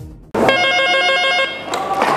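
A desk telephone ringing with a steady, rapidly warbling ring that cuts off near the end as the handset is picked up.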